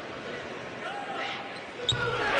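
Basketball dribbled on a hardwood court at the free-throw line over the steady murmur of an arena crowd, with one sharp bounce near the end just before the shot.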